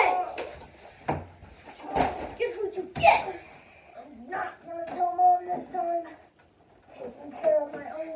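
Boys' voices calling out and groaning without clear words. There are three sharp knocks about one, two and three seconds in.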